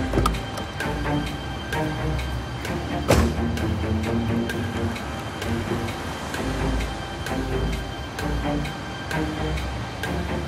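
Tense, suspenseful background music: held low notes under a steady ticking pulse, with one sharp hit about three seconds in.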